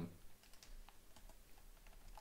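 Faint computer keyboard typing: a scatter of light keystrokes.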